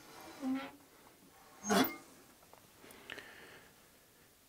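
Cast-iron wood-burning stove door being swung open: a short creak just after the start, then a louder, sharper scrape a little before two seconds, with faint handling noise near the end.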